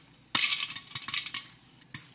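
Corn kernels popping inside an oil-stirring popcorn maker, ticking against its clear plastic dome: a quick cluster of pops about a third of a second in, then a few scattered single pops.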